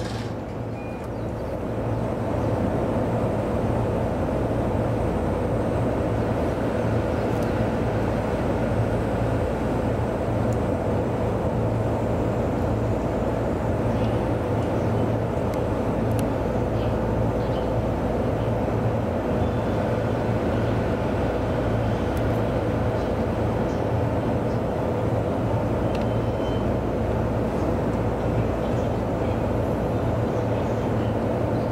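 Steady hum of a stationary E233-series electric train standing at a platform, heard in the driver's cab: the whir of its onboard equipment runs on with no motion, with a brief click right at the start.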